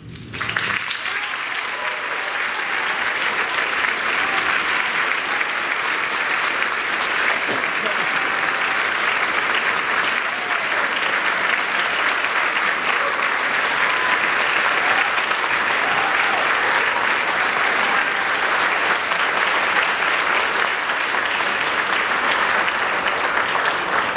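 Audience applause that breaks out and builds over the first few seconds, then holds steady, with voices calling out in the crowd.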